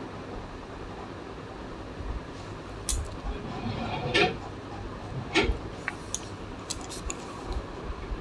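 Quiet cooking sounds as cornflour slurry is poured from a steel bowl into a pan of simmering sauce and stirred in with a slotted spatula, with a few light clinks of metal utensils against the bowl and pan.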